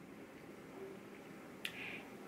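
Quiet room tone, then about one and a half seconds in a single sharp mouth click as the lips part, followed by a brief breath drawn in.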